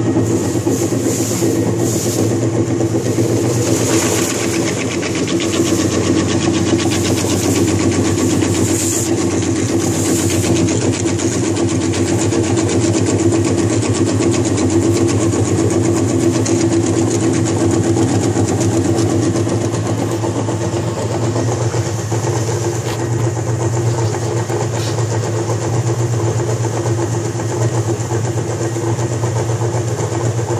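GSL-series plastic granulator running steadily while grinding polypropylene sack twine: a loud, constant machine hum with a fast chopping texture, and brief bursts of hiss in roughly the first ten seconds.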